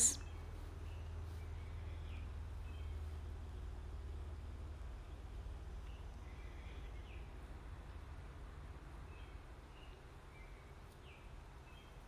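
Low, steady background hum with a few faint, short high chirps scattered through, all at a quiet level.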